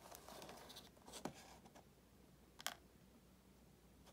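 Near silence, with faint handling sounds of a cardboard-and-plastic diecast car box being turned in the hands on a tabletop: a soft rustle, then two small clicks about a second and a half apart.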